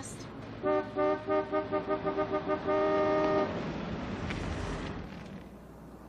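Car horn honked impatiently: about ten short, quickening toots, then one long blast. A fainter wash of noise follows and fades away.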